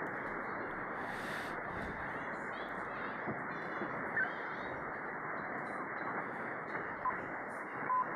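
Shortwave receiver static from an RTL-SDR clone dongle in upper-sideband mode, tuned across the 40-metre amateur band: a steady hiss cut off above the sideband's audio width, with a couple of brief faint whistles as it passes signals.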